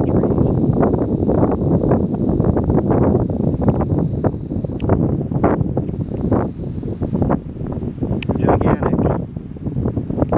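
Gusty wind buffeting a handheld camera's microphone, a dense rumble that eases briefly near the end. Under it, a faint steady high whine from the camera's zoom motor until about seven seconds in.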